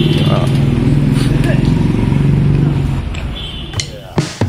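A road vehicle's engine running close by, a steady low hum that fades away about three seconds in.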